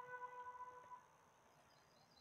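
Faint background music: a single held note fading out about a second in, then near silence.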